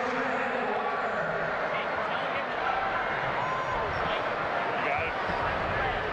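Stadium crowd ambience at a football game: a steady murmur of many voices, with a few indistinct voices standing out here and there.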